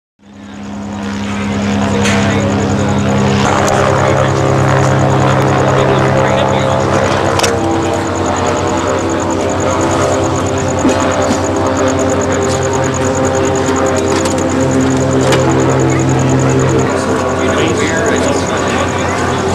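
Low-flying aircraft overhead: a loud, steady engine drone whose pitch shifts a few times as it passes.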